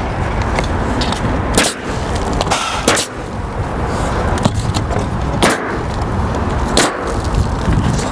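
Pneumatic coil roofing nailer firing nails through an asphalt shingle, several sharp shots spaced a second or so apart, over a steady low rumble.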